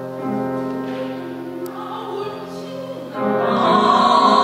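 Female opera singer singing with grand piano accompaniment; her voice grows much louder, with a strong vibrato, about three seconds in.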